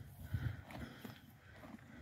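Faint sounds of a horse right at the microphone, with a few soft low thuds in the first second.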